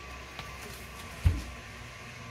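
Handling at an open gas oven: a steady low hum with one dull thump a little over a second in, as a mitted hand reaches in for the cake pan.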